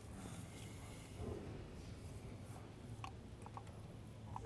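Faint tool handling: a few light clicks from a spark plug socket and extension as a new spark plug is threaded by hand into a VW 1.8T cylinder head, over a steady low hum.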